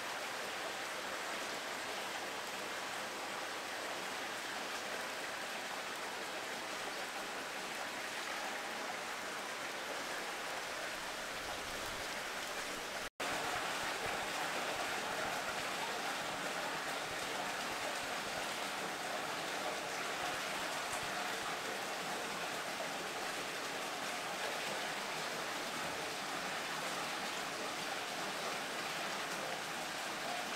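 Steady rushing noise of running water, even throughout, with a momentary dropout about 13 seconds in, after which it is slightly louder.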